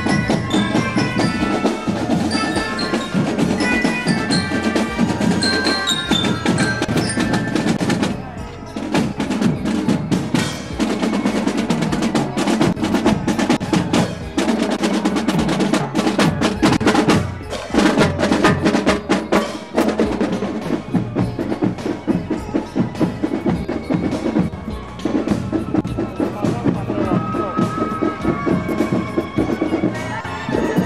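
Marching band of melodicas and drums: the melodicas play a bright melody over the drums, then after a short break about eight seconds in, the snare and bass drums play a fast, dense cadence with little melody.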